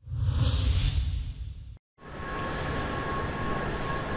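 A news-bulletin transition sound: a deep boom under a swooshing whoosh, lasting under two seconds and cutting off abruptly. After a moment of silence, the steady ambient noise of a large railway station hall follows, with a faint held tone in it.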